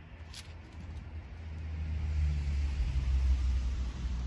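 A low rumble that swells from about a second in to its loudest near the end, with a hiss rising along with it, and a single sharp click just before half a second in.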